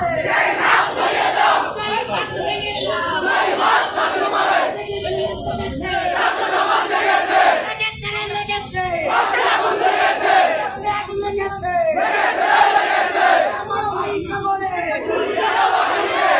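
A large crowd of protesting students chanting slogans together. Each shouted phrase comes in a steady rhythm about every three seconds.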